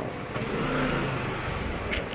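A motor vehicle's engine running in street traffic, growing louder toward about a second in and then easing off, over the hum of the street.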